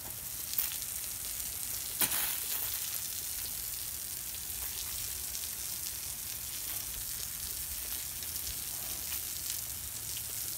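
Garden hose spraying water onto a horse's chest and legs and splashing on the wash-rack floor, a steady hiss of spray. A sharp click sounds about two seconds in.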